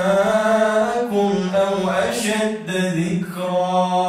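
A man chanting Quran recitation in a slow, melodic style, holding long notes and sliding between pitches in ornamented turns.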